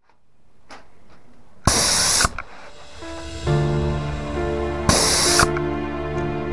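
Two short bursts of hiss, each about half a second and a few seconds apart, from a Graco 395 airless paint sprayer's gun as the trigger is pulled and paint is sprayed. Background music comes in partway through.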